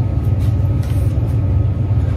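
A steady low rumble, with a few faint rustles of clothing and a wooden hanger as a jacket is carried to a clothes rack.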